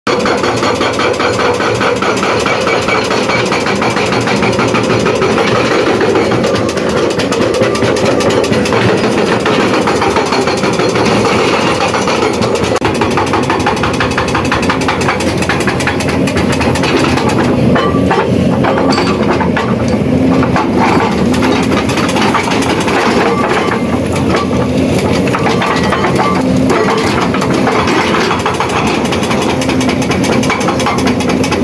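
Excavator-mounted hydraulic rock breaker hammering continuously into rock, a rapid, steady pounding heard over the excavator's running engine.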